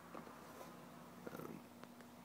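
Near silence: room tone with a faint steady low hum, a few faint soft sounds and a small click near the end.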